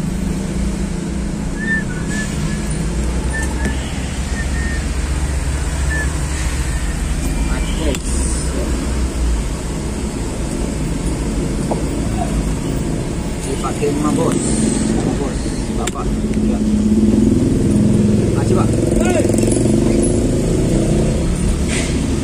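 Engine and road noise of a moving vehicle heard from inside the cab, a steady rumble that grows louder for a few seconds near the end, with motorcycles passing close outside.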